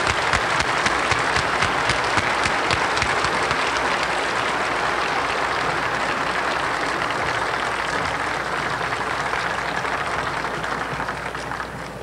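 A large audience applauding steadily, a dense patter of many hands clapping that eases slightly near the end.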